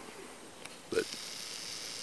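Faint, steady outdoor background hiss, with one short spoken word about a second in.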